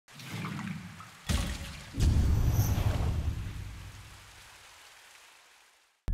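Sound effects of an animated logo intro, watery and splash-like: a sharp hit just over a second in, then a heavier hit at about two seconds with a deep rumble that slowly fades away.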